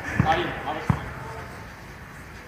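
A soccer ball bouncing twice on an artificial-turf court: two dull thuds under a second apart.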